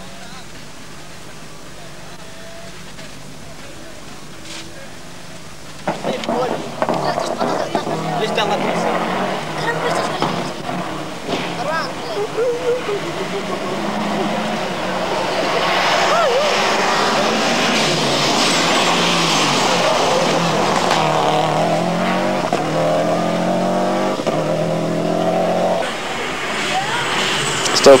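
Subaru Impreza rally car's turbocharged engine revving hard, its pitch climbing and dropping again and again as it works through the gears. For the first six seconds there is only a faint steady hum before the engine comes in loudly.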